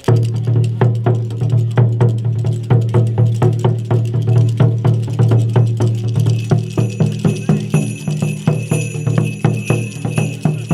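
Taiko drums beaten with wooden sticks in a quick, even festival rhythm, each stroke ringing with a deep boom. From about six seconds in, a high metallic jingling of hand-held bells joins the drumming.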